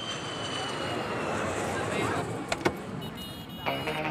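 Busy airport-front ambience: a haze of traffic and crowd noise with a faint high jet whine slowly falling in pitch. Two sharp clicks come a little past the middle, and music comes in near the end.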